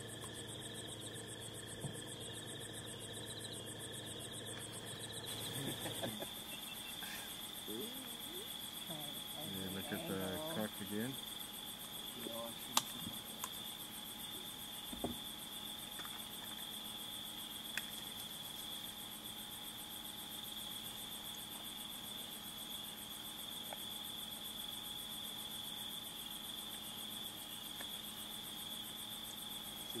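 Steady high chirring of night-time crickets, with a few sharp clicks and a brief low murmur about ten seconds in.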